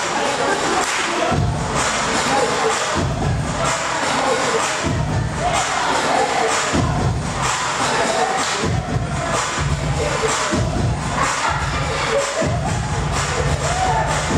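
Dance music with a heavy bass that comes and goes about once a second, played loud over a crowd of dancers cheering and shouting.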